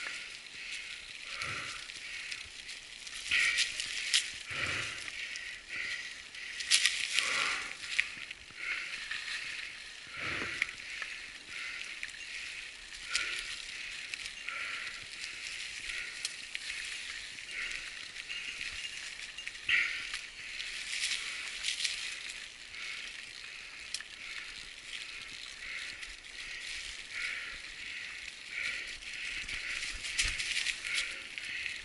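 Mountain bike tyres rolling through a thick layer of fallen leaves on a dirt trail, a continuous crunching and crackling, with a few louder knocks and rattles from the bike going over bumps.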